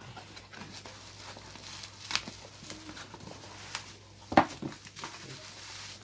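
Plastic bubble wrap and cardboard box flaps rustling and crinkling as a wrapped package is handled and lifted out of its box, with a few sharp clicks, the loudest about four and a half seconds in.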